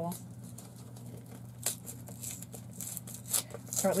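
Light rustling and small scattered clicks of packaging being worked open by hand, with a sharper tick about a second and a half in and another near the end, over a steady low hum.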